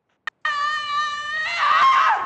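A woman screaming in labour: one long held scream starting about half a second in, turning into a wavering, breaking cry near the end.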